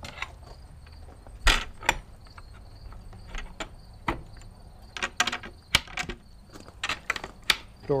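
A hinged trailer compartment door swung shut with a knock about a second and a half in, followed by a string of sharp metal clicks and taps as its latches, including a barrel bolt, are worked closed. Faint insect chirring runs underneath.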